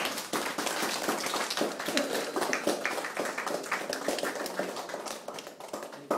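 A small group applauding the end of a song: dense, continuous hand clapping with a few voices calling out among it.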